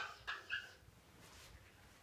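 Dry-erase marker squeaking on a whiteboard as a red arrow is drawn: three short, high squeaks in quick succession about a half-second in.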